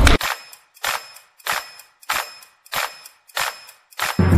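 A bare percussion beat in the music: seven sharp hits, evenly spaced a little over half a second apart, each ringing briefly, with the rest of the track dropped out.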